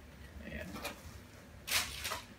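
Plastic-bagged parts rustling and being shifted about inside a cardboard box by hand, faint at first with a louder rustle near the end.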